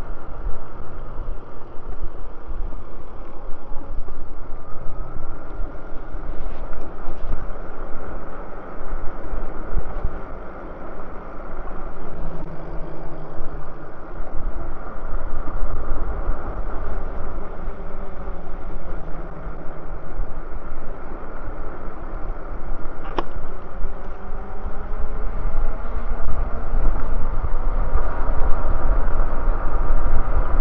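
Wind rushing over the microphone and tyre noise from an e-bike rolling along a paved trail, with a faint whine that rises and falls in pitch as the speed changes. A single sharp click comes about three-quarters of the way through.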